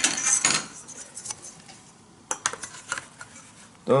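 Steel ruler picked up off a wooden table and laid down on paper over cardboard: a clatter of metal clinks at the start, then a few lighter taps and knocks about two and three seconds in.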